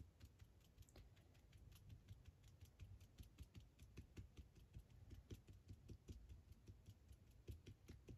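Felt-tip marker tip tapping dots onto paper: a quick, uneven run of light, faint taps, several a second.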